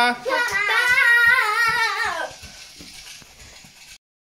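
A young child calling "Papa, Papa" in a drawn-out, sing-song voice whose pitch wavers up and down, for about two seconds before fading.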